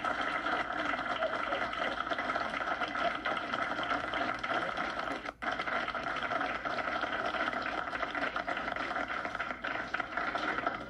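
A roomful of people applauding steadily, with the sound cutting out for an instant about five seconds in.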